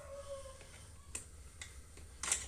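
Two faint sharp plastic clicks past the middle, as the stiff locking latches on a Kyocera developer unit's casing are worked loose.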